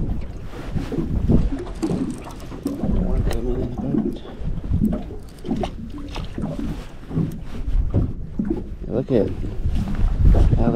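Wind rumbling on the microphone and water lapping against a small boat's hull, with a baitcasting reel being cranked as a hooked catfish is brought in. Brief muttered words come through a few times.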